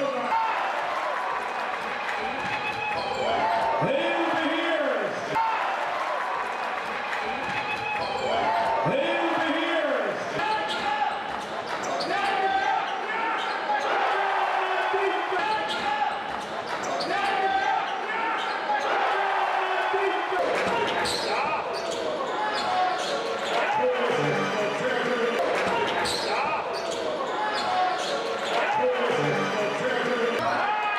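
Live basketball play on a hardwood court: the ball bouncing, with players' and spectators' voices calling out, echoing in a large sports hall.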